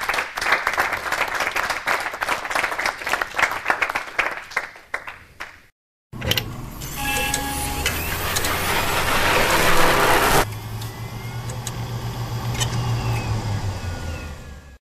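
Audience applauding for about five and a half seconds. After a brief silent gap comes an electronic outro sound: a swelling rush of noise with steady tones that cuts off sharply about ten seconds in, then a low steady hum.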